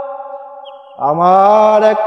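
Male voice singing a slow Bengali song with long held notes. One note fades away, and about a second in he slides up into a new long-held note.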